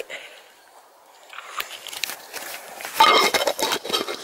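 Camera handling noise: the camera's microphone rubbing against a hand and clothing, a scratchy rustle that builds from about halfway through and is loud in the last second.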